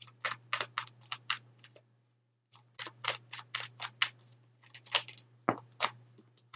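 Tarot cards being shuffled and handled: a quick, irregular run of card clicks and slaps that breaks off briefly about two seconds in, over a steady low hum.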